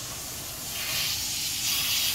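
Garden hose spray nozzle spraying water over a Rhodesian Ridgeback's coat to rinse off the shampoo; a steady spray that grows louder a little under a second in.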